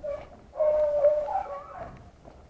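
Beagles baying on a rabbit hunt: a short call, then a long drawn-out one from about half a second in. This is the voice hounds give while running a rabbit's scent.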